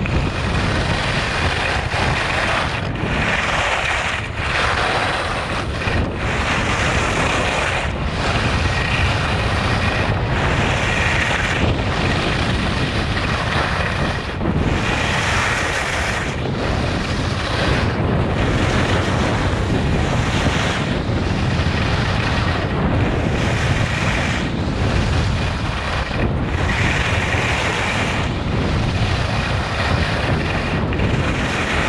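Wind buffeting the microphone of a skier's camera during a fast descent, mixed with the hiss and scrape of skis on groomed snow. The noise is loud and continuous, easing briefly every second or two.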